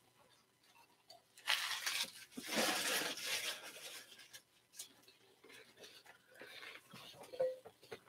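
Rustling and crinkling of trading-card packs and wrappers being handled and opened, louder about a second and a half in and again near three seconds, then fainter scattered rustles and clicks.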